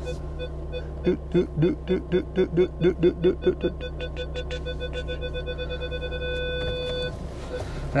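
A van's reversing parking sensor beeping, its beeps coming faster and running into one continuous tone about six seconds in, then stopping: the van is reversing into a parking space and has got close to an obstacle behind. An engine idles steadily underneath. About a second in, a man's voice makes a rhythmic run of about a dozen short notes.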